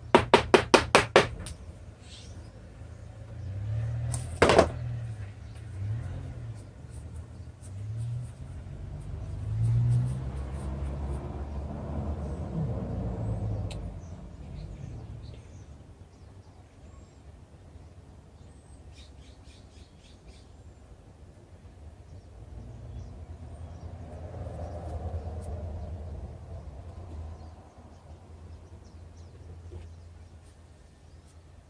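A quick run of about ten sharp clicks, then one loud knock about four seconds in, followed by low rumbling handling noise that swells and fades twice.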